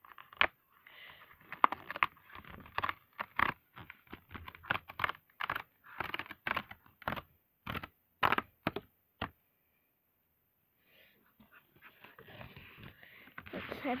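Paper cover of a Color Wonder colouring pack being handled and opened by hand: a run of irregular crinkles and rustles that stops about nine seconds in.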